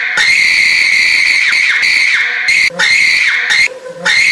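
A person's very high-pitched scream, held at one steady pitch in long stretches. It breaks off briefly about two and a half seconds in and again near the end.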